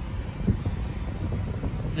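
Steady low rumble inside the cabin of a 2009 Mercedes GL450, its engine idling with the air-conditioning blower running, and a faint knock about half a second in.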